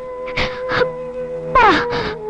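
Background film music holding steady notes, with a woman's crying over it in a few short sobs.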